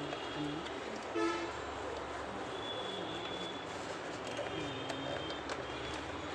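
Steady background street noise, with a short vehicle horn toot about a second in.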